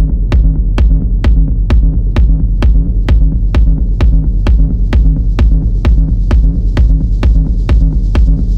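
Techno in a continuous DJ mix: a steady four-on-the-floor kick drum at about two beats a second over a deep, pulsing bass line. A hissing noise swell builds in the high end through the second half.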